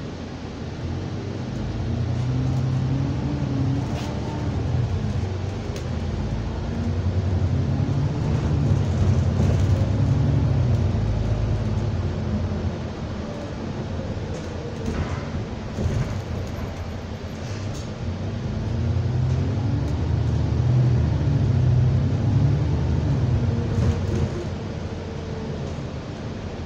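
Engine of London double-decker bus T310 heard from the lower deck. Its low rumble swells as the bus pulls away and accelerates, eases off, then swells again, with a few sharp knocks and rattles from the bodywork.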